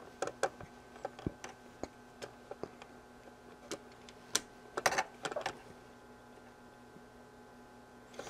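Irregular small clicks and taps of meter test-probe tips and fingers on the parts of a small circuit board while capacitors are being tested, with a denser run of clicks about halfway through, over a faint steady hum.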